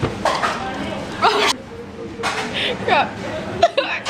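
A young woman's short wordless cries and nervous laughs, several brief bursts whose pitch swoops up and down, as a live octopus clings to her hand; a short sharp tap near the end.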